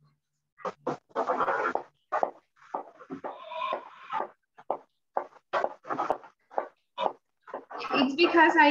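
Loud animal calls coming through a participant's microphone on a video call: an irregular run of short sharp calls starting about half a second in, with one longer drawn-out call in the middle.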